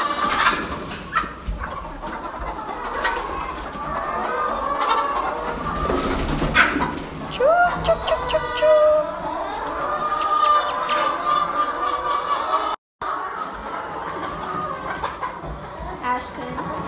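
A flock of brown laying hens clucking and calling over one another without a break, with scattered sharp knocks among them. The sound drops out completely for a moment about thirteen seconds in.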